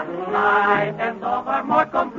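A group of voices singing together in harmony, with the narrow, dull sound of an old radio transcription recording.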